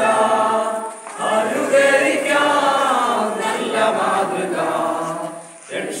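A group of children and women singing an action song together, phrase by phrase, with a short break about a second in and another near the end.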